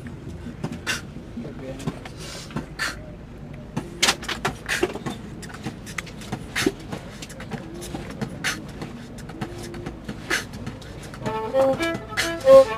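Irregular, sparse percussive clicks and taps over low background voices; a violin starts bowing near the end.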